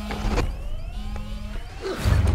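Smartphone intrusion alarm going off: a repeating rising electronic chirp over a low buzzing tone that comes on twice, the sign of a perimeter breach.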